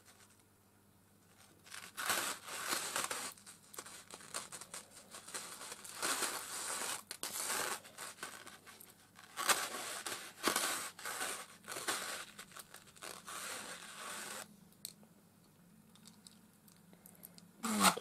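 Clear plastic packaging being crinkled and torn open by hand in a series of irregular rustling bursts, quiet for the first two seconds and stopping a few seconds before the end.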